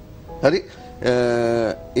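A man's voice making hesitation sounds: a short 'uh' about half a second in, then a drawn-out, steady 'ehh' lasting most of a second, with faint steady background tones underneath.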